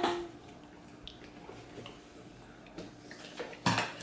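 Faint mouth sounds of a man chewing a soft cinnamon cookie in a quiet room, with a few small ticks; a short breathy voice sound comes near the end, just before he speaks.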